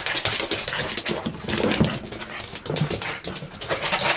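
A pug running about excitedly on a laminate floor: a quick patter and scrabble of paws and claws, with panting and a few short whimpering vocal sounds near the middle.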